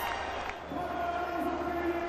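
Cricket stadium crowd noise, steady, with a long held chant-like note rising out of the crowd just under a second in.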